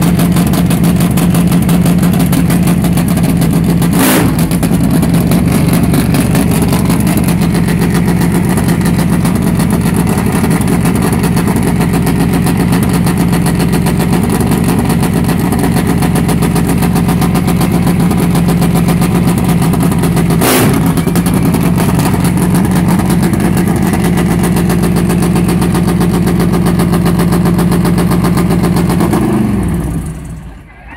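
Drag racing motorcycle's engine running very loud at a steady, high idle, with two brief sharp pops along the way. Near the end it is shut off and the engine note falls away.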